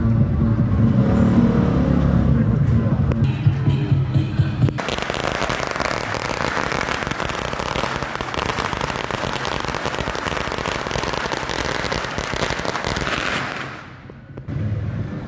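A long string of firecrackers going off in a rapid, unbroken crackle for about nine seconds, starting abruptly about five seconds in. Before it, a low steady drone.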